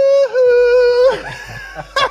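A person's long, high, held "ooooh" of excited reaction, steady in pitch with a brief dip just after it starts, trailing off about a second in.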